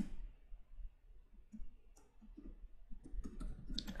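Computer keyboard keys being typed: faint, irregular clicks that come more often near the end.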